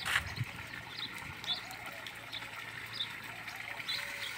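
Water running steadily from a hose fed by a water tanker, with a bird chirping repeatedly in short high notes. A short knock right at the start.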